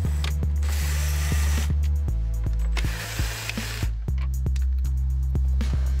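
Cordless drill/driver running twice, about a second each time, backing out the 7 mm fasteners that hold an instrument cluster in the dash. Background music with a steady beat plays throughout.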